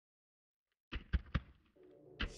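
Three sharp knocks in quick succession, about a fifth of a second apart, after a silent start; faint steady tones begin near the end.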